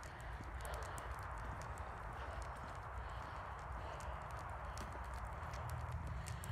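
Footsteps walking on a wet tarmac path, a quick train of light clicks over a steady hiss.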